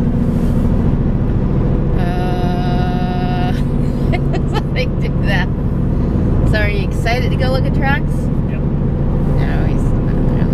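Steady engine and road drone inside a moving car's cabin. A held pitched tone sounds for about a second and a half, about two seconds in, and brief voice-like sounds come through in the middle.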